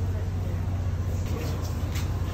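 Steady low rumble of outdoor street noise, wind buffeting the phone microphone along with road traffic, with a few faint clicks in the second half.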